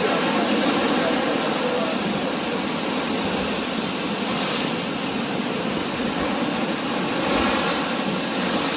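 Steady rushing noise of a motorboat under way at sea, its motor running under the rush of water and wind.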